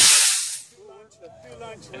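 Model rocket motor's exhaust hiss as the rocket climbs away from the pad, fading out within the first half second, followed by faint voices.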